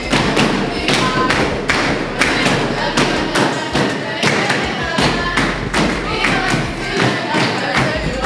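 A steady beat of hands thumping and slapping on a wooden table, about three to four beats a second, with clapping and voices calling along.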